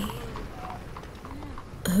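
Faint street ambience in a pause between spoken lines: light clip-clop knocks with faint voices.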